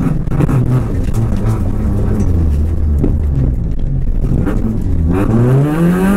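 Rally car's engine heard from inside the cabin: the revs drop and hold low for a few seconds, then climb steadily near the end as the car accelerates.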